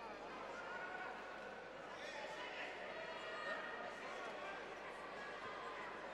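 Faint voices of spectators and coaches calling out across a large sports hall, over the hall's steady background noise.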